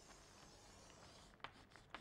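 Very faint scrape of chalk drawing a line across a blackboard, with a couple of light taps near the end.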